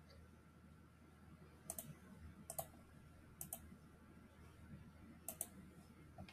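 A computer mouse clicking four times, each click a quick press-and-release pair, over near-silent room tone.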